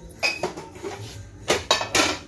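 Dishes and utensils clattering as they are handled at a kitchen counter: one clink about a quarter-second in, then three sharp clatters in quick succession near the end.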